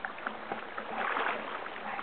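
River water sloshing and splashing around legs in waders as people wade waist-deep through the current, with small splashes throughout that grow a little louder about a second in.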